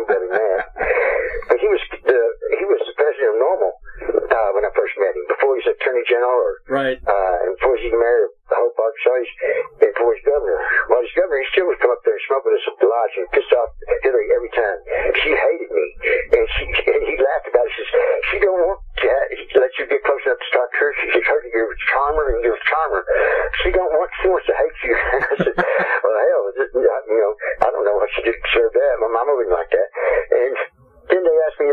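Only speech: a voice talking continuously, thin and narrow-band with no bass or treble, as heard over a telephone line.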